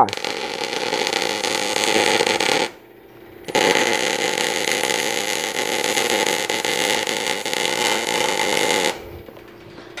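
Electric arc welding on a steel roof truss, in two beads: the first runs about two and a half seconds and stops, and after a short pause a second runs about five seconds, stopping about a second before the end. The short beads are alternated between the truss's lower and upper chords so the heat does not bow the truss.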